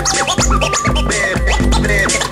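Vinyl record scratched by hand on a turntable in quick back-and-forth strokes, chopping a vocal sample heard as "back", over a hip hop beat with a bass hit about twice a second.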